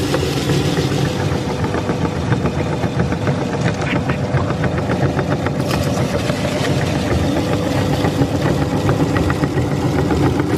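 Meat grinder running steadily with a motor-like hum, crushing chips, whose crunching makes a dense crackle of small ticks over the hum as the crumbs are pushed out through the cutting plate.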